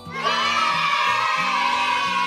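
A group of children shouting "Nine!" together as one long, held chorus over light background music.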